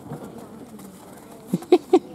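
Ostrich chicks calling: faint at first, then three short, loud calls in quick succession near the end.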